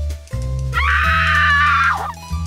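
A woman's scream sound effect starts about three-quarters of a second in and lasts just over a second, loud and high-pitched, over background music with a steady bass line.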